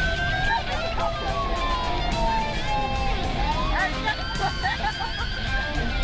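Police car siren in its wail, one slow rising and falling tone that climbs again about three and a half seconds in, heard from inside the car's cabin over engine and road noise.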